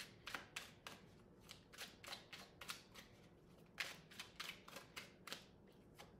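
A deck of tarot cards shuffled by hand: faint, quick card slaps and snaps coming in three loose runs with short pauses between.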